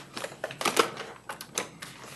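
A quick, irregular run of clicks and light rustles close to the microphone: handling noise at the lectern.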